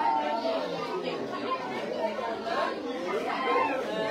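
Chatter of several voices talking at once.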